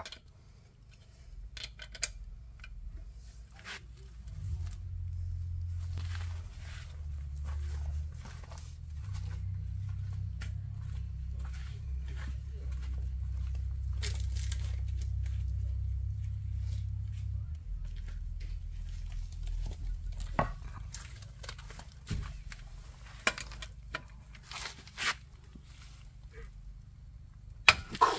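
Scattered small clicks and clinks of hand tools being handled at a truck's front wheel, over a low rumble that swells through the middle and fades again.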